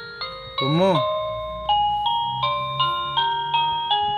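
Battery-powered baby toy playing a simple electronic chiming melody, one note after another, with a short sliding voice-like sound effect about a second in.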